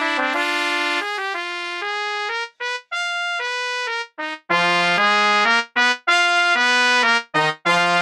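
Computer score playback of a five-part trumpet and brass arrangement. One phrase ends on sustained chords, then a thinner, quieter staccato line carries on alone in a fast 5/4. About four and a half seconds in, the whole ensemble comes in louder with short, detached notes.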